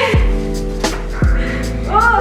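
Background music with held tones and deep, downward-sliding bass hits about once a second; a woman calls out "whoa" at the very end.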